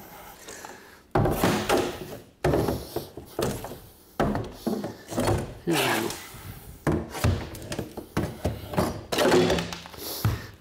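Long pry bar levering at the base of a wood-panelled half wall: a sudden thunk every second or two, with wood creaking and cracking as the panelling and its screwed-down framing are forced loose.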